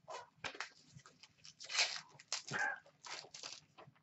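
Foil trading-card packs being torn open and cards handled: a run of short crinkles, rips and rustles. Around the middle come two louder, brief sounds, one with a falling whine-like pitch, of unclear source.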